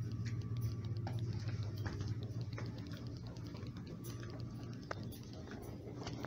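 Steady low hum of building room noise with faint footsteps on a hard tiled floor, a light click about every three-quarters of a second.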